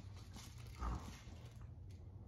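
Greyhound rummaging with its head in a cushioned dog bed, faint soft knocks and rustles, with one soft thump about a second in.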